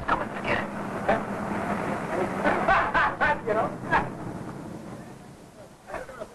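Indistinct men's voices over a steady low hum of street noise; the voices stop about four seconds in and the background then fades.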